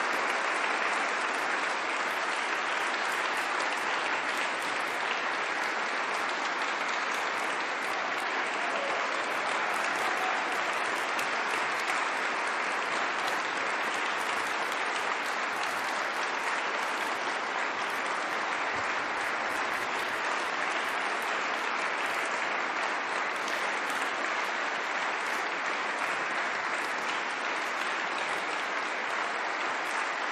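Audience applauding steadily: dense, even clapping that holds at the same level throughout.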